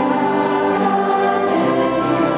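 Mixed choir of teenage students singing in sustained chords, the harmony shifting to a new chord about one and a half seconds in.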